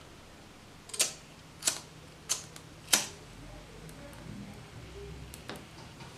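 Small hard objects handled on a tabletop, a lit tealight in its metal cup and a lighter: four sharp clicks about two-thirds of a second apart, then a few fainter ticks.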